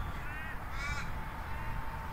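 Two short bird calls about half a second apart, with a faint steady whine starting about halfway through.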